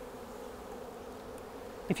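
Honeybees from an opened package flying around the hive, a steady buzzing hum.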